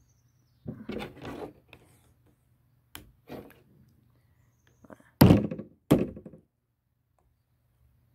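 Several sharp thuds and knocks on a tabletop as a knife hacks at a frog carcass, the loudest two about five and six seconds in.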